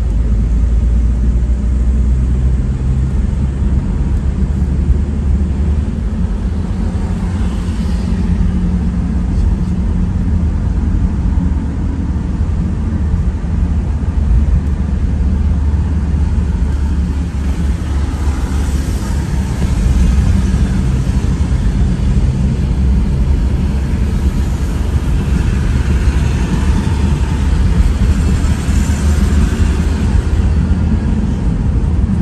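Steady low rumble of a car driving through city traffic, engine and tyre noise, with the noise swelling briefly twice, about two-thirds of the way in and near the end.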